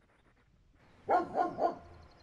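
A dog barking three times in quick succession, about a second in.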